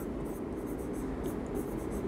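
Marker pen writing on a whiteboard: quiet scratching strokes.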